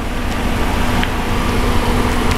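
A 2000 Jeep Grand Cherokee's engine idling with a steady hum. It runs smoothly with no unusual noises, which is taken as a sign of good running condition.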